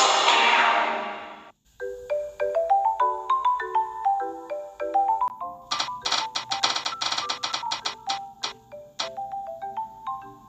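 Loud intro music fades out in the first second and a half. A light marimba-like tune follows, and from about five and a half seconds in a spinning name-wheel app ticks rapidly, the ticks spreading out as the wheel slows.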